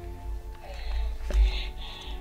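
Background music with sustained tones over a low bass. Through it come faint handling sounds of the toy and its cord necklace being adjusted, with one light knock a little past the middle.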